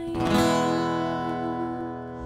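Acoustic guitar: one chord strummed just after the start, then left ringing and slowly fading. It is the closing chord of the song.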